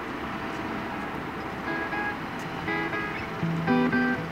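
Background music: a soft, steady wash, with picked guitar notes coming in about halfway through and a bass line joining near the end.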